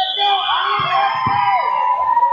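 Overlapping shouting from coaches and spectators around a wrestling mat in a large hall, one voice holding a long high-pitched call through the second half.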